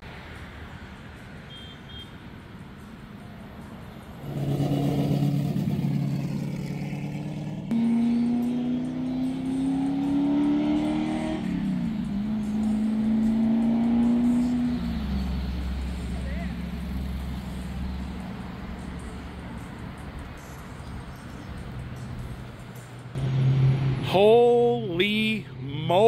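A car engine driving past, coming up about four seconds in. Its pitch climbs, dips once, climbs again, and fades into a low rumble after about fifteen seconds.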